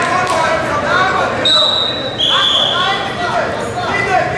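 Two short blasts of a referee's whistle, the second a little lower in pitch, over voices shouting in the hall as the wrestling bout restarts.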